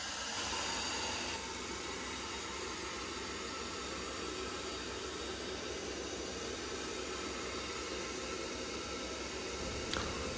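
A steady, even hiss with no voice, slightly louder for about the first second and a half.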